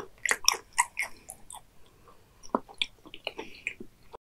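Close-miked chewing of raw beef liver: wet mouth clicks and smacks, a thick run in the first second and a half and another cluster later on.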